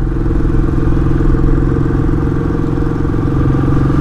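Royal Enfield Classic 500's single-cylinder engine pulling steadily in third gear under load up a steep climb, at an even, unchanging pitch; it is still pulling, like a tractor.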